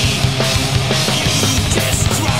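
Heavy metal drum kit played live along with the recorded power metal song: fast, steady drumming with crashing cymbals over the full band.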